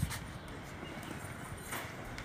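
Light footsteps on a hard terrazzo terrace floor, with a short rustle of a backpack being handled near the end.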